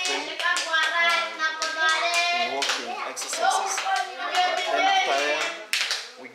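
A group of children's voices chanting together, with repeated hand claps.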